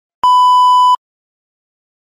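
A single steady electronic test-tone beep, the kind that goes with TV colour bars, starting a moment in and lasting under a second, then cutting off sharply.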